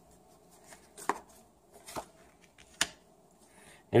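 Tarot cards being handled and dealt from a hand-held deck onto a cloth-covered table: three short, sharp clicks about a second apart.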